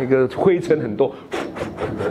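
A man's voice making wordless vocal sounds into a handheld microphone, with a short breathy rush about one and a half seconds in.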